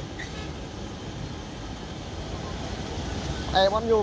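Steady low outdoor rumble, with a person's voice speaking briefly near the end.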